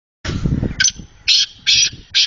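A caged teetar (francolin, a partridge) calling: a run of short, harsh, high-pitched notes about half a second apart, after a rough burst of noise at the start.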